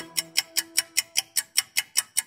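Countdown timer ticking sound effect, about five quick, even ticks a second, over a faint held musical tone.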